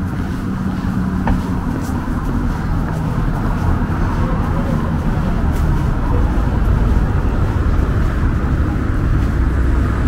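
Steady low rumbling outdoor ambience, with faint voices in the background.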